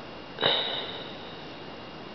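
A single short sniff about half a second in, sharp at the start and fading within half a second. A faint steady high-pitched whine runs underneath.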